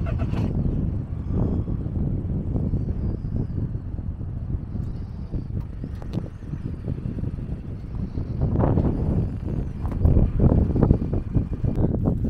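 Wind buffeting the camera microphone on an exposed coastal headland: a continuous low rumble that rises and falls in gusts, stronger near the end.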